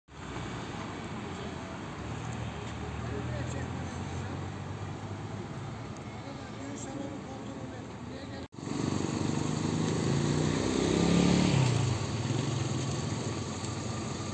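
Vehicle engines running at a roadside stop, a low steady hum with indistinct voices over it. The sound drops out abruptly about eight and a half seconds in and comes back closer and louder, the engine note swelling and bending around eleven seconds.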